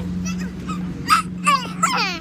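A dog yelping three times in the second half, each yelp short, high-pitched and falling in pitch, over a steady low hum.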